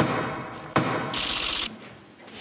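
Two gavel strikes about three-quarters of a second apart, each ringing briefly, followed about a second in by a short hiss.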